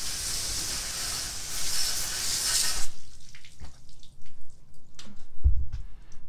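Hose spray nozzle jetting water onto a dirt bike engine, rinsing off degreaser: a steady hiss and splatter that stops about three seconds in, followed by faint dripping and a low thump near the end.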